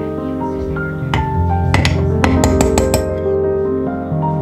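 Soft background instrumental music, with a quick run of light clinks from a metal spoon against a glass mason jar of jam about one to three seconds in.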